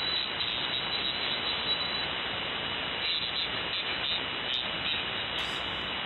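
Steady hiss of band noise through a single-sideband ham radio receiver on the 75-metre band, heard in the gap between transmissions, with a faint steady high whistle under it.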